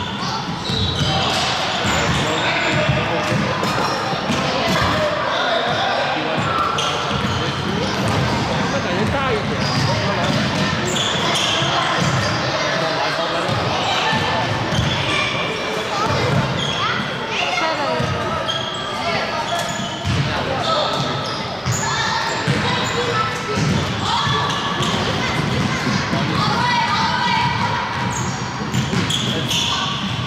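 Basketball bouncing repeatedly on a hardwood gym floor amid indistinct voices, echoing in a large hall.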